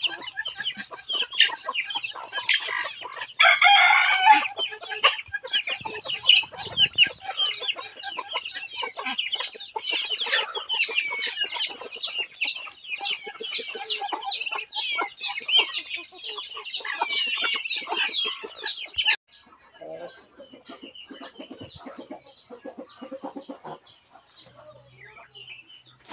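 A flock of chickens clucking continuously, many short overlapping calls, with one longer, louder call about three and a half seconds in that fits a rooster crowing. After about nineteen seconds the clucking thins out and becomes quieter.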